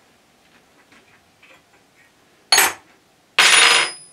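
Metal tools and parts clattering on a workbench: light handling clicks, a sharp clank about two and a half seconds in, then a louder rattling clatter with a ringing tone near the end.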